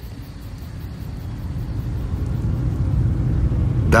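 A low rumble that swells steadily louder.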